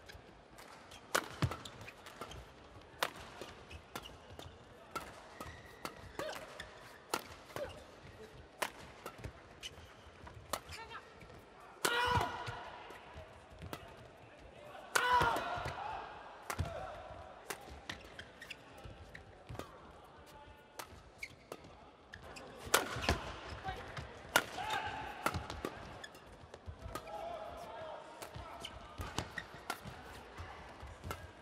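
A long badminton rally: sharp cracks of rackets striking the shuttlecock about once a second, over the hum of an arena crowd. A few louder pitched sounds come midway and later in the rally.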